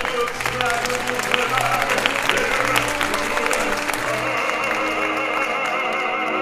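Theatre audience applauding over the pit orchestra, which keeps playing. The clapping fades about four seconds in as held vibrato notes return in the music.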